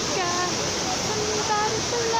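Trevi Fountain's cascades of water rushing in a steady roar, with a woman's voice singing held and falling notes over it.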